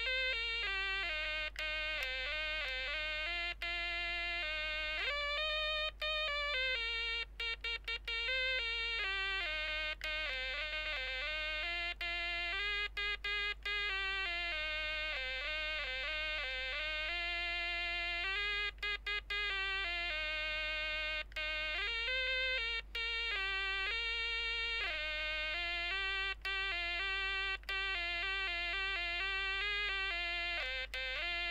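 Stylophone, the stylus-played pocket synthesiser, playing a melody one note at a time, the pitch stepping up and down with short breaks between phrases where the stylus lifts off the keyboard.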